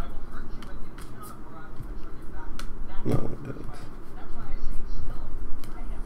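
Indistinct voices murmuring in the background, with light clicks and rustles from a stack of trading cards handled in the hand.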